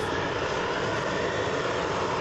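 A steady, loud rushing roar from equipment preparing the pipe, holding even throughout.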